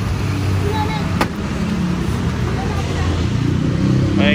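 A motor vehicle engine running steadily close by, with a single sharp knock about a second in, against faint voices.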